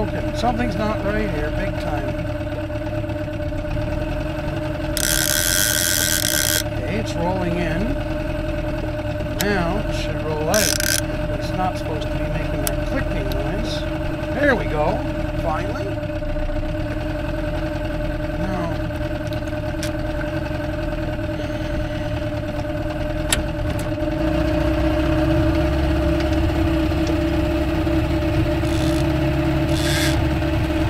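Small outboard motor running steadily at trolling speed, louder and deeper from about 24 seconds in. Two brief high-pitched bursts come about five seconds in and again about ten seconds in.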